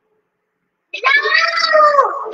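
A child's high-pitched voice, drawn out for about a second and rising then falling in pitch, starting about a second in after a dead-silent gap.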